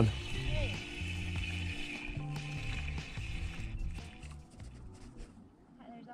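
Background music with a steady bass line of held low notes, dropping away about four seconds in.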